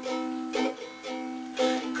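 Ukulele playing alone between sung lines: strummed chords ringing on, with fresh strums about half a second in and again about a second later.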